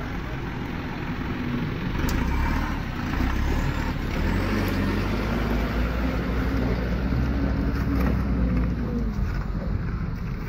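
A truck engine running steadily with a low rumble, with people's voices faintly in the background.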